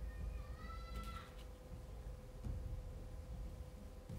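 A single high-pitched, drawn-out cry about a second long, its pitch rising slightly, heard at the start over a faint steady hum.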